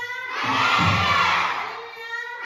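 A large group of children shouting together in a hall, one loud group shout that swells from about half a second in and fades by the end.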